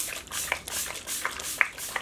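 Several short spritzes of a pump-mist bottle of makeup setting spray being sprayed onto the face, each a brief hiss.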